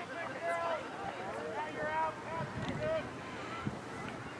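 Girls' voices calling and shouting on the field during play: a run of short, high-pitched calls, too distant to make out as words.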